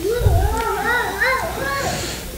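A young child's high voice, rising and falling without clear words, with a dull low bump just after the start.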